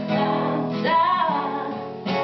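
A woman singing live over a strummed nylon-string classical guitar, her voice gliding up to a held note about a second in.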